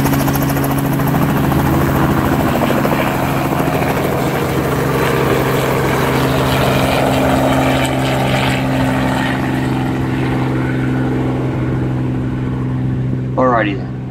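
Light helicopter running and flying off: a steady hum of engine and rotor that eases slightly in level over the last few seconds.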